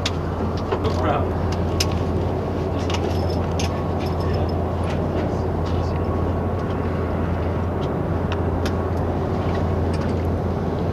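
Steady low drone of running flight-line machinery, aircraft or ground-support equipment, with a faint steady whine and scattered light clicks and knocks, most of them in the first few seconds.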